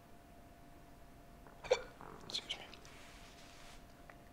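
A brief, sharp vocal sound from a man, like a hiccup, about a second and a half in, followed by a soft breathy hiss. A faint steady hum runs underneath.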